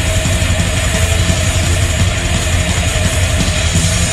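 Live heavy metal band playing loud, dense music on distorted electric guitars, bass and drum kit, an instrumental stretch with no singing.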